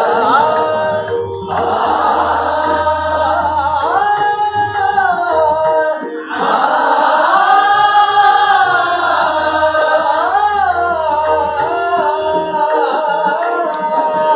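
Hindustani classical vocal phrases of a composition in Raga Kedar, sung by the teacher and echoed by the class of students singing together, over a steady tanpura drone. The melody glides and bends in pitch, with a brief break about six seconds in before a fuller group passage.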